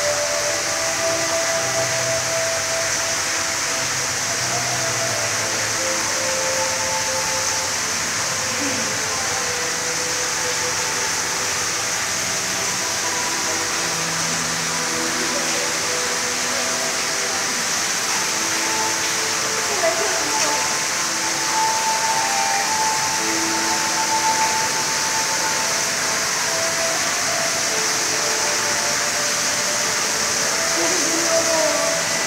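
Public aquarium ambience: a steady hiss with indistinct visitors' voices in the background.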